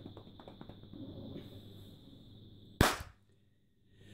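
A single sharp knock about three seconds in, over a faint steady high whine and a few soft clicks; right after it the sound cuts out to dead silence.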